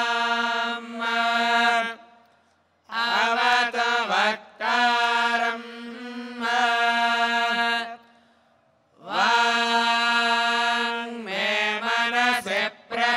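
Male Vedic chanting: long notes held on a steady pitch, with brief pitch bends between them. The chanting stops twice for short pauses, about two and a half and eight and a half seconds in.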